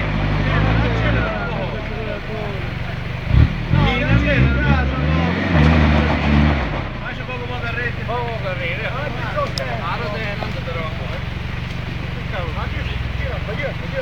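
Toyota Land Cruiser 4x4's engine labouring up a steep muddy climb, revving up and down more loudly for a few seconds in the middle, then settling back to a steady, lower drone. People's voices call out over it.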